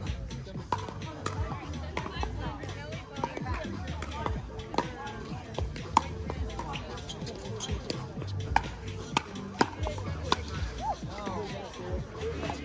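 Pickleball paddles hitting a plastic pickleball in a rally: a series of sharp pops, the loudest about six seconds in, the rest coming roughly half a second to a second apart later on. Background music and distant voices run underneath.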